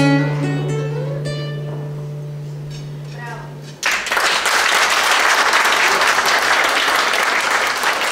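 Final chord on an acoustic guitar ringing out and slowly fading, then just under four seconds in an audience breaks into steady applause that lasts to the end.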